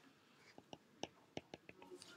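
Faint, light ticks of a stylus tip tapping on an iPad's glass screen while handwriting, about seven irregular clicks over the last second and a half.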